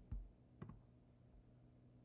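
Near silence: room tone with two faint clicks, one just after the start and one a little over half a second in.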